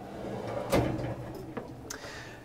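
Pull-out wire basket rack in a kitchen cabinet sliding along its runners and shutting, with a knock about three-quarters of a second in and a lighter click near the end.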